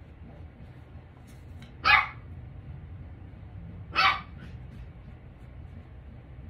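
A puppy barking twice: two short barks about two seconds apart.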